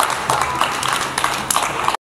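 Audience clapping and applauding, with a few voices mixed in; the sound cuts off suddenly near the end.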